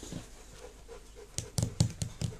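A puppy panting: faint at first, then a quick run of about four short, sharp sounds near the end.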